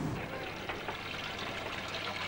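Water pouring in a steady stream.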